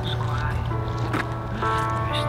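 A song playing: a singing voice over steady instrumental backing with a constant bass.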